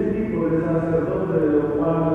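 Chanted singing in long, slowly changing held notes, which starts just before and carries on steadily.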